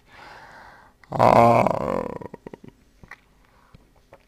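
A man breathes in, then lets out a loud, drawn-out voiced sigh about a second in, followed by a few faint mouth clicks.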